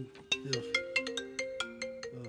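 A mobile phone ringing: its ringtone plays a quick tune of short pitched notes, about five a second.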